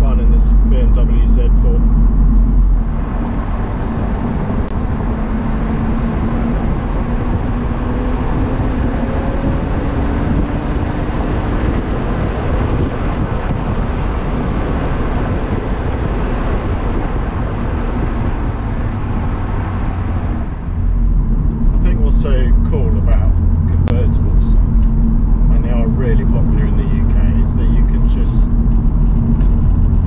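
BMW Z4 E85 roadster driving at low speed with the roof down: a steady engine drone with road noise. From about 3 s to 21 s a dense wind rush takes over, with the engine note slowly rising beneath it.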